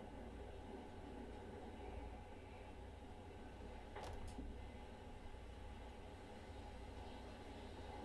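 Faint steady hum and hiss of room tone, with a quick double click of a computer mouse about four seconds in.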